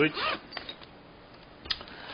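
Faint handling of a nylon longboard bag and its straps, with a single sharp click near the end.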